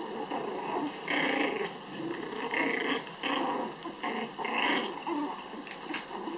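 Pomeranian puppies growling in play as they tug and wrestle, in about five short bursts starting about a second in.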